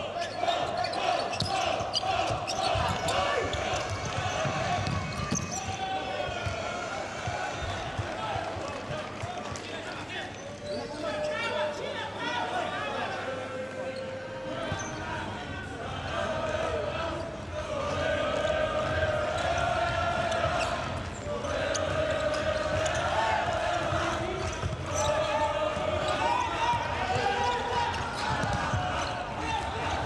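A futsal ball being kicked and bouncing on an indoor court, with repeated thuds of passes and touches, while voices call out in the hall.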